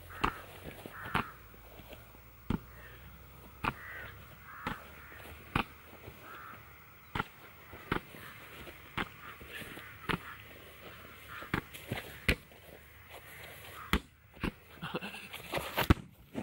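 An inflatable beach ball being hit back and forth by hand and head, a sharp smack about once a second, with a quicker run of hits near the end. Calls that are tagged as bird calls sound between the hits.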